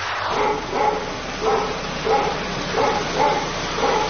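Short animal calls repeated about twice a second over a steady hiss. The hiss starts and stops abruptly.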